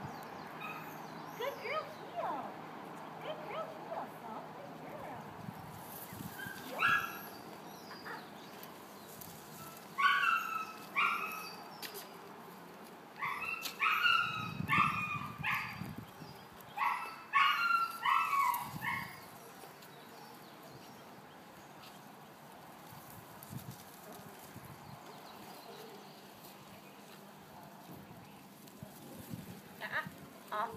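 Dog barking: a single bark about seven seconds in, then bouts of quick, short barks from about ten to nineteen seconds in.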